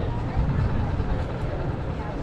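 City street ambience: a steady low traffic rumble with faint voices of passers-by.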